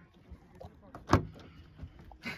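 A car door being opened: one sharp latch clack about a second in, with a few fainter clicks and handling sounds around it.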